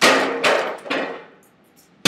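A heavy long-handled tool smashing into a drywall wall: one loud crash right at the start, with a couple of smaller knocks as it dies away over about a second.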